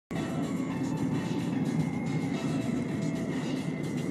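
Steady road and wind noise inside a car travelling at about 45–50 mph on a highway, a low rumble of tyres and air with a faint thin whine above it.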